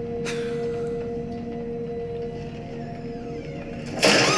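Film score music holding a sustained drone of a few steady notes, which thins out near the end, with a brief sharp swish about a quarter of a second in.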